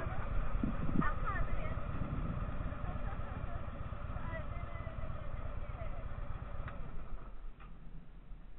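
Harley-Davidson motorcycle's V-twin engine idling with a steady low rumble that fades near the end, with faint voices over it.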